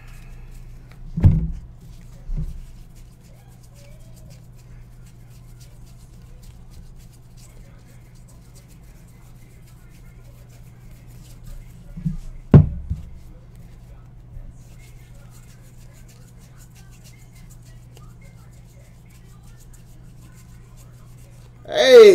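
Trading cards handled on a padded tabletop, with three dull thumps, two close together near the start and a louder one about twelve seconds in, over a low steady hum.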